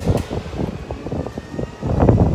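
Airport terminal ambience on a moving walkway: a low, uneven rumble with scattered knocks from the phone being handled close to its microphone.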